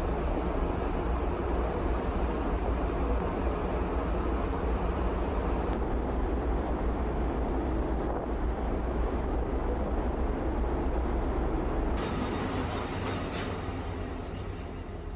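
Steady rumble and rush of a large ferry under way at sea, heard on the open deck: a deep engine drone mixed with wind and the water noise of the wake. About two seconds before the end it switches to a different, less rumbling steady noise inside the ship.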